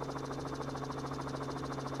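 Steady engine hum with a fast, even pulse, typical of a helicopter heard on a live aerial news feed.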